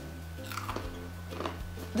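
Close-up chewing of dry roasted chickpeas with sea salt: a run of short, sharp crunches beginning about half a second in as they are bitten and broken up in the mouth.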